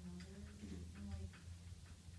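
A few light, short clicks or ticks over a steady low room hum, with a faint voice in the background.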